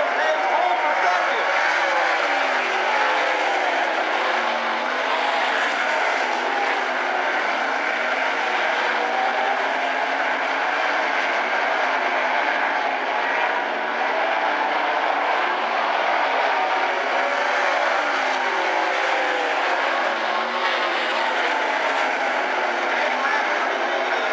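360 sprint cars' V8 engines racing on a dirt oval: several engines are heard together, their pitch repeatedly falling and rising again as the cars lift off and get back on the throttle through the turns.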